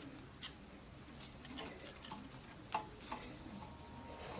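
A few faint, sharp metallic clicks and taps from hand tools being handled at a motorcycle's front wheel hub, the clearest two a little under three seconds in, a third of a second apart.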